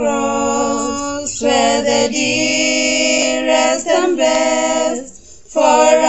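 Three women singing a hymn a cappella, with long held notes and a brief pause for breath near the end.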